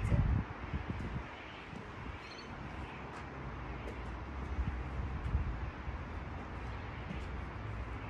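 Low rumble of wind on the microphone over faint outdoor background noise, with a few knocks at the very start.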